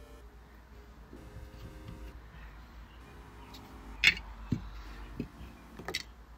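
Faint background music with a few light clicks and knocks of plastic toy parts being handled, the sharpest about four seconds in.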